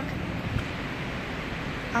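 Steady cabin noise inside a running truck: a low rumble with a rush of air and no distinct events.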